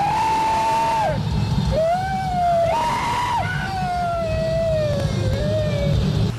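Car driving through a road tunnel: a steady low road-and-engine rumble, with a high wailing tone over it in long held notes that slide up and down and jump higher for a moment about three seconds in.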